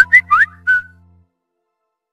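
A quick run of four or five short, high whistled notes, one sliding upward, over the last of a held musical chord as it dies away.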